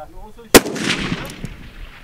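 A single rifle shot: one sharp crack about half a second in, followed by about a second of fading echo over the range. The round strikes the dirt berm beside the steel plates, a miss.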